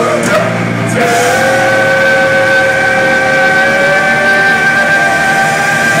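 Live heavy-metal band playing loudly with distorted electric guitars, drums and cymbals, heard from the crowd; about a second in, a long steady note is held out.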